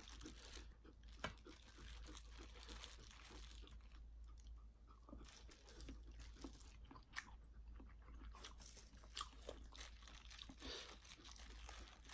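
Faint close-miked chewing of boiled chicken and cabbage: irregular soft crunches and wet mouth clicks.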